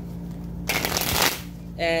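Tarot deck being riffle-shuffled on a table: one quick rattle of the two halves interleaving, lasting under a second, about the middle.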